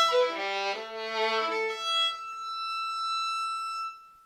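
Violin bowed across all four strings, a run of changing notes dropping to the low strings, then one long high note held for about two seconds that stops just before the end.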